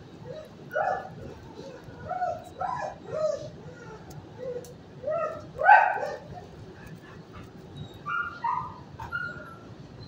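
Dogs barking and yipping in short, high calls that come in small clusters, the loudest pair about six seconds in.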